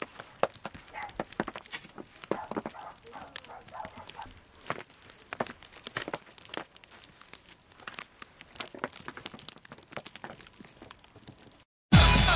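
Irregular crunching and crinkling of snow close to the microphone, as someone moves about in deep fresh snow.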